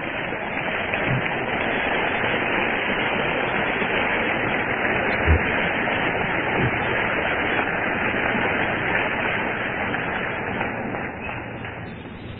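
Audience applause in a live hall, heard through a muffled, low-fidelity recording. It swells up in the first second, holds steady, and tapers off near the end.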